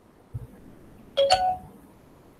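An electronic notification chime of two quick notes that ring briefly and fade, preceded by a soft low bump about a third of a second in.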